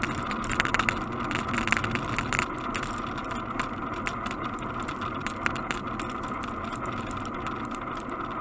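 Bicycle riding along a road, heard from a camera mounted on the bike: a steady road and wind noise with frequent irregular clicks and rattles from the bike and the mount. The clicks come thickest in the first couple of seconds.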